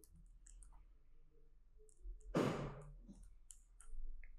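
Faint, scattered light clicks, with one short, louder rush of noise about two and a half seconds in.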